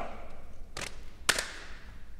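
Two sharp cracks about half a second apart, the second the louder, each with a short echo.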